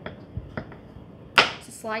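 Chef's knife cutting through raw butternut squash onto a plastic cutting board: a few faint taps, then one sharp chop about one and a half seconds in.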